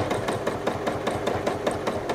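Sewing machine free-motion quilting through a quilt, its needle stitching in a fast, even run of clicks.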